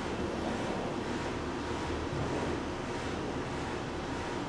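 Steady outdoor background noise, an even rush with no distinct events.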